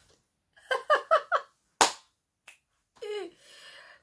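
A woman laughing in a few short bursts, then a single sharp snap or clap a little under two seconds in, and a brief falling vocal sound near the end.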